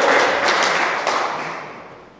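Hand clapping after a won point in table tennis, a dense patter of claps that dies away near the end.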